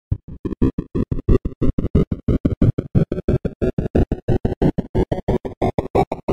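Hardtek electronic dance track opening with a rapid, evenly chopped stutter of about eight pulses a second, growing brighter as it builds.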